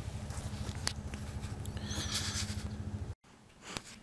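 Four-wheeler (ATV) engine idling with a steady low, even putter while warming up, cut off abruptly about three seconds in.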